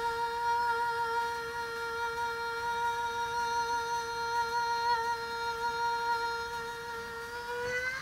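A woman singing one long held note at a steady pitch, unaccompanied, while she has a head cold; the note bends upward at the very end and breaks off.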